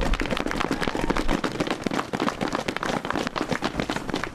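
Audience applauding: many quick, irregular claps running together.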